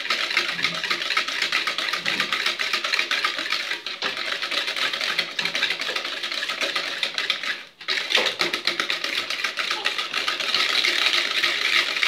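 Wire hand whisk beating eggs and sugar in a bowl, making a fast, steady clicking and swishing against the bowl's side, with a brief pause about two-thirds of the way through.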